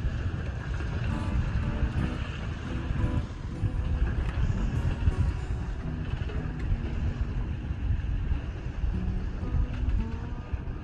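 Wind buffeting the microphone on a sailboat under way, a steady low rumble, with background music of short held notes playing underneath.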